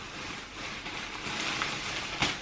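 Clear plastic packaging bag rustling and crinkling as a soft coat is pulled out of it and handled.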